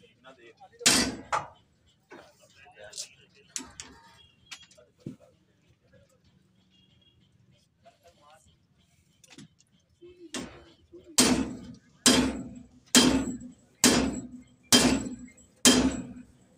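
Hammer blows on steel fittings under a railway coach. There is one strike about a second in, then six evenly spaced blows just under a second apart over the last five seconds, each ringing briefly.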